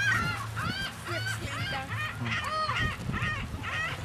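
A flock of gulls calling around people feeding them by hand, with short, arched, overlapping calls two to three a second.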